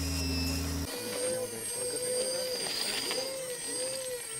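A steady low drone that cuts off sharply about a second in, then the whine of a 1:10 scale RC rock crawler's electric motor and geartrain, its pitch wavering up and down with the throttle over a thin, steady high-pitched whine.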